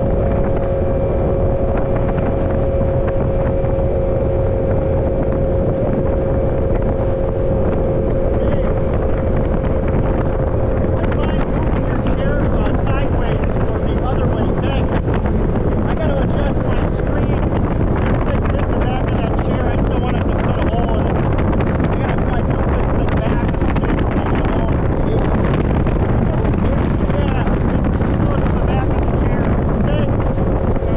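Outboard motor running steadily at cruising speed on a moving fishing boat, with a steady engine whine and heavy wind rush buffeting the microphone.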